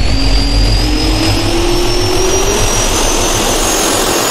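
Jet-engine spool-up sound effect: two slowly rising whines, one low and one high, over a steady rush of air.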